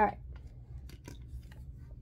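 A few faint, light clicks and rustles of small craft objects being handled, over a low steady hum, after a brief spoken "all right" at the start.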